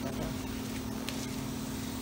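A steady, low mechanical hum of a running motor, unchanging in level, with a faint click about a second in.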